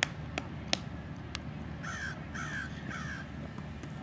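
A bird calls three times about half a second apart, each call falling in pitch, over steady low background noise. A few sharp clicks come in the first second and a half.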